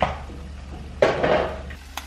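Kitchen dishware being handled: a sharp clink at the start, then about a second in a short burst of clattering noise that fades away.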